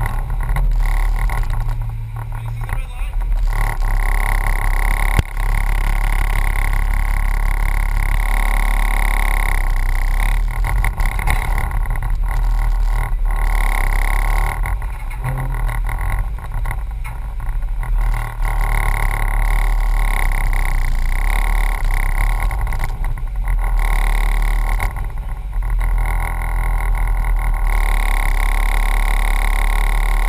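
Jeep Scrambler engine running steadily as the Jeep creeps forward over rock to a creek crossing, picked up by a camera on its hood, with the creek's rapids rushing alongside.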